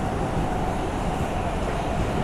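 R142 subway car running through a tunnel, heard from inside the car: a steady rumble of wheels on rail with a faint, even whine above it.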